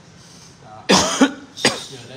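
A person coughs twice in quick succession about a second in, the first cough longer than the second; both are loud.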